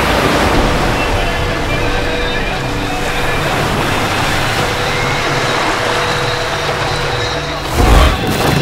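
Dramatic TV background score under a dense, rushing rumble of sound effects, with a few held tones, ending in a loud boom just before the end.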